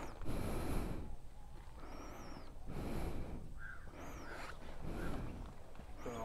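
Wind gusting on the microphone, with a faint high bird call that repeats about every two seconds.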